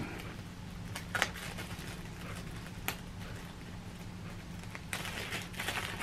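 Quiet room tone with a steady low hum and a few faint, brief clicks.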